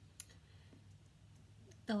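Quiet room tone with a low steady hum and one faint, short click a fraction of a second in; a woman's voice starts speaking near the end.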